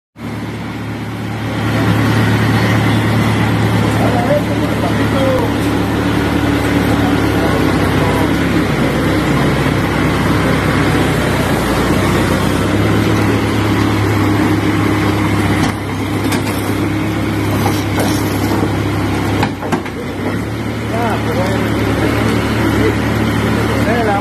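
Backhoe loader's diesel engine running steadily, its engine speed shifting about halfway through and again later on, with faint voices behind it.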